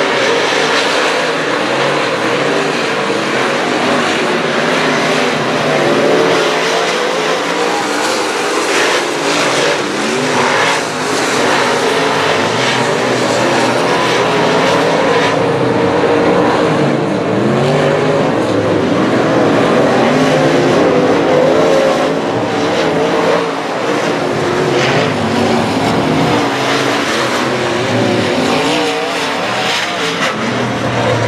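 Several dirt-track modified race cars' V8 engines at racing speed, their overlapping notes rising and falling as the drivers get on and off the throttle through the turns.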